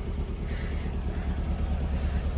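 Steady low rumble of a 2022 Corvette Stingray's V8 idling, with no change in pitch.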